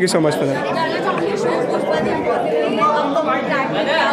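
Background chatter of many people talking at once in a large room, steady throughout. A man says a brief "thank you so much" at the start.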